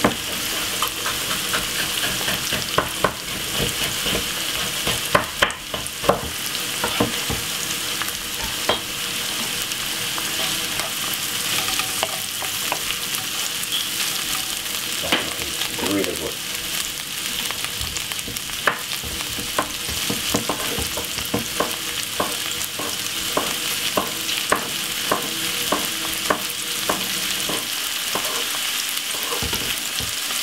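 Sliced sweet peppers, onion and carrot frying in hot oil in a non-stick pan: a steady sizzle with frequent sharp crackles.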